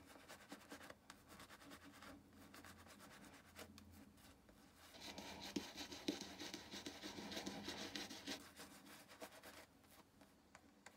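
Shaving brush lathering a stubbled face: faint, rapid rubbing and scratching of the bristles on skin, louder from about halfway through.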